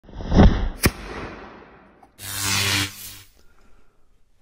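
A homemade firecracker-style blasting cap going off: a loud burst and a sharp crack within the first second, then a rumble that fades over about a second. About two seconds in comes a second, roughly one-second rushing noise with a low hum.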